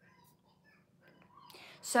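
A pause in a woman's speech: near silence for about a second, then a faint breath, and she starts speaking again with a drawn-out "So" near the end.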